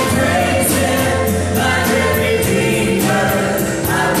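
Three women singing a gospel worship song into microphones, backed by a live band with drums and keyboard; cymbal hits recur steadily through the song.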